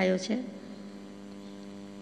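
The last syllable of a spoken word ends, then a steady electrical mains hum fills the pause: a low, unchanging buzz with many even overtones.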